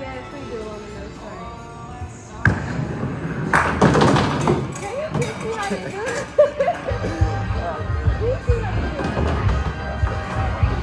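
A bowling ball is released onto the wooden lane with a thud about two and a half seconds in. About a second later comes a clatter as it strikes the pins. Background music plays throughout, its bass heavier in the last few seconds.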